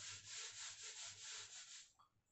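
A hand rubbing marker off a whiteboard in quick back-and-forth strokes, a faint scratchy wiping that pulses three or four times a second and stops just before the end.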